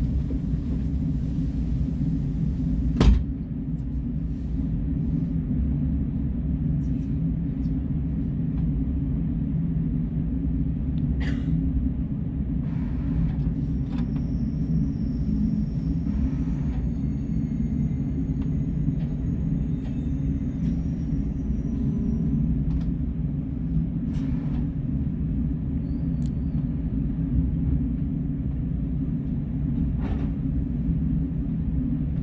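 Steady low rumble in the passenger cabin of a KTX high-speed train as it pulls slowly into the station and comes to a stop. A single sharp knock comes about three seconds in.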